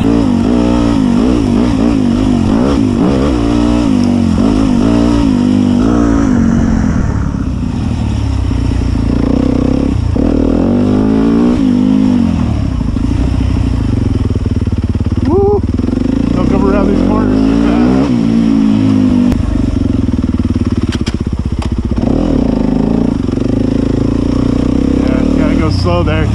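Dirt bike engine being ridden on a narrow trail, its pitch rising and falling every second or two as the throttle is rolled on and off.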